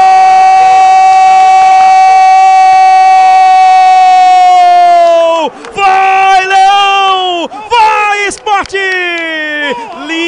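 Football commentator's long goal shout: one held note for about five and a half seconds that drops away at the end, followed by short, excited shouted phrases, each falling in pitch.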